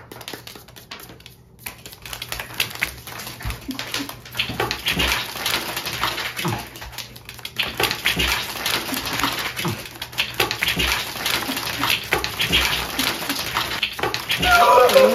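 Playing cards being shuffled and flicked: a dense, uneven run of rapid papery clicks and riffles that starts about a second and a half in and keeps going, with a faint steady hum beneath.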